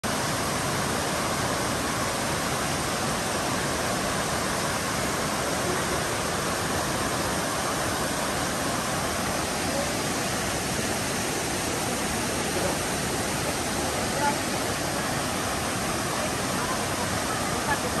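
Steady rushing of several small waterfalls pouring into a pool.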